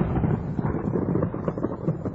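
Low, crackly rumble slowly fading away: the decaying tail of a boom in a radio break bumper.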